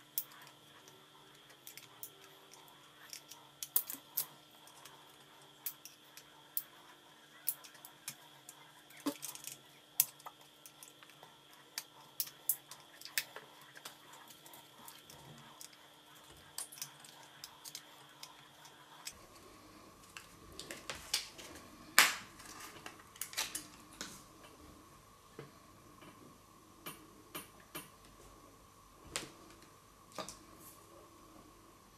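Small screwdriver clicking and scraping on the screws and plastic housing of a Philips AquaTouch electric shaver being taken apart, with scattered light clicks and taps of plastic parts being handled. The sharpest click comes a little past two-thirds in.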